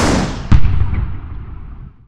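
Logo sting sound effect: a whoosh swells up, then a deep boom hits about half a second in and fades away, its hiss thinning out as it decays.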